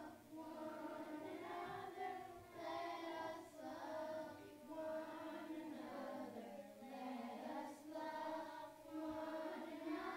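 A group of children singing a song together, in held phrases with short breaks between them.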